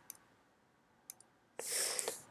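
Two faint computer-mouse clicks, then a short breath near the end.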